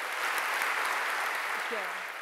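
Audience applauding in a hall, steady and beginning to die down near the end.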